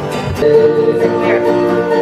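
Acoustic guitar strummed as accompaniment to a man singing a folk ballad, with a chord or note held and ringing through most of the stretch.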